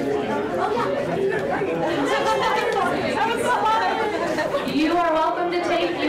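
Many people talking at once in a large room: overlapping conversations with no single voice standing out.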